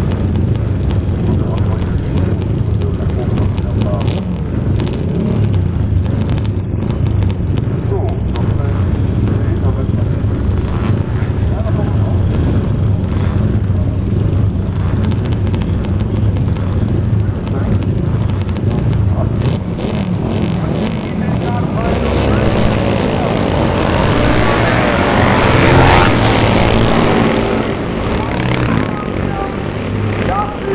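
Classic 500 cc racing motorcycles running on the starting grid, a steady low engine drone. About twenty-two seconds in, the engine sound swells, with the pitch rising and shifting, peaks a few seconds later and then eases off.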